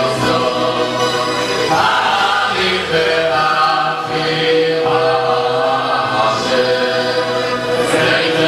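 A large group of men singing a Hasidic melody together, holding long notes.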